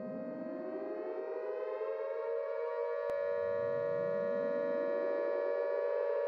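Intro of a hip-hop track: a sustained siren-like tone with two slow rising sweeps that climb and level off into it, growing gradually louder. A single short click about three seconds in.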